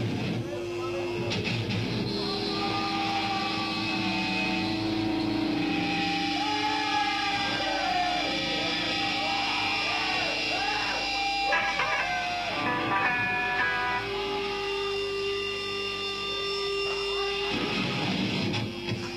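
Live metal band on stage, in a quiet passage with the drums stopped: long, ringing held notes from the instruments, with a few scattered hits. The drums come back in near the end.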